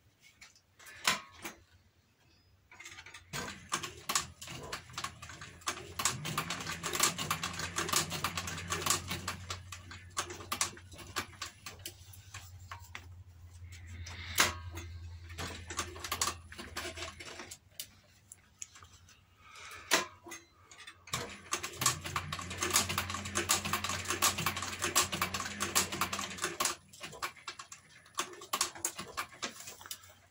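Industrial walking-foot sewing machine stitching a leather strap: rapid needle-and-feed clatter over a steady motor hum. Two runs of stitching, the first starting about three seconds in and the second about twenty seconds in, each lasting several seconds, with quieter handling clicks between them.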